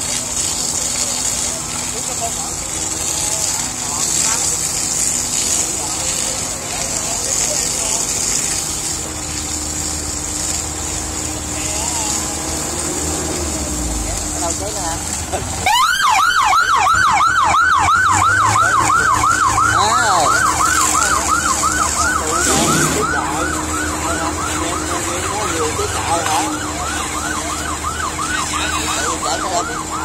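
Fire hoses spraying water with a steady hiss over a steadily running pump engine. About halfway through, a fire engine siren starts close by, louder than everything else, sweeping rapidly up and down about twice a second until the end.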